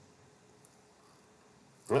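Near silence: faint room tone with a low steady hum, then a man starts speaking right at the end.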